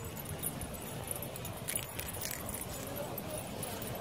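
Faint light metallic jingling and small clicks from the metal fittings of a small dog's harness and lead while it walks, over a steady low outdoor noise.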